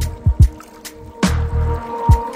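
Chill electronic background music with a beat: a deep kick drum struck twice in quick succession early on, and a low bass note coming back about a second and a quarter in, under light percussion ticks and a steady synth tone.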